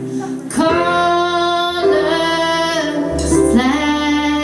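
Live band music with female voices singing long held notes. Each note lasts a second or more before moving to the next.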